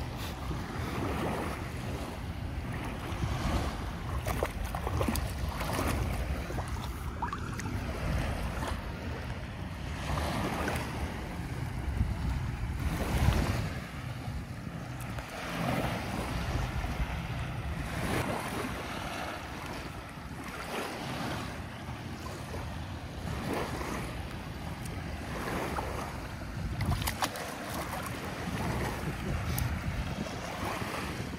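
Ocean surf washing onto the beach, swelling every few seconds, loudest about 13 seconds in, with wind noise on the microphone.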